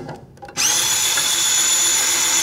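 Kurara Wash handheld electric dish washer's motor spinning its brush: a steady high-pitched motor whine that starts about half a second in and holds level.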